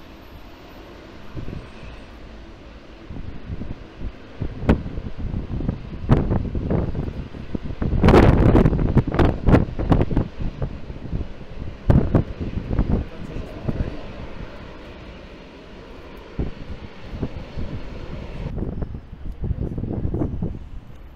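Jet airliner engines on landing and rollout, a rumbling noise that swells loudest about eight to ten seconds in, with wind gusting and crackling on the microphone.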